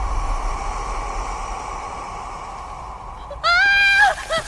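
A deep rumbling drone fading away, then near the end a sudden high-pitched voice that slides up briefly and holds one clear note before dropping.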